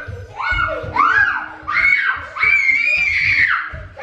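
A toddler squealing: four high-pitched shrieks that rise and fall in pitch, the last held for about a second.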